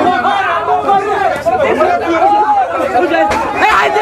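Several people talking at once, their voices overlapping in continuous chatter.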